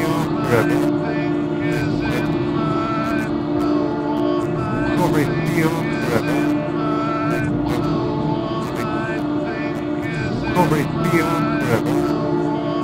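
Electronic music from a VCV Rack modular synthesizer patch: a steady low drone with curving pitch glides and scattered short noise bursts, without a regular beat.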